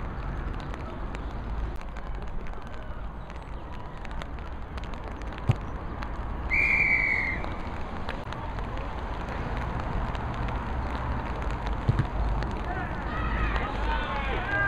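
A referee's whistle blown once about halfway through: a single high, steady blast lasting under a second. It sounds over a steady low outdoor rumble, with players' voices calling near the end.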